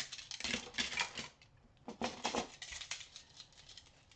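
Plastic salmon-fishing flashers being picked up and handled, giving light clicks and rattles in two spells with a short pause between.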